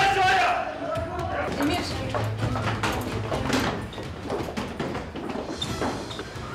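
Indistinct voices with scattered short knocks and bumps.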